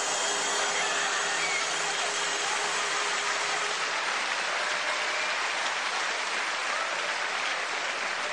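Large audience applauding steadily, the clapping of many hands blending into an even sound.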